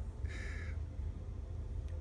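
A short raspy, breathy vocal sound like a stifled laugh, about half a second long, over a low steady room hum.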